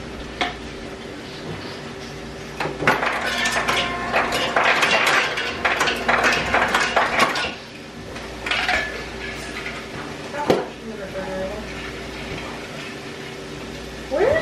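Kitchen clatter of pots, pans and metal utensils being handled at the stove: a dense run of clinks and knocks for about five seconds starting near the three-second mark, a few more after, and one sharp knock about ten seconds in, over a steady low hum.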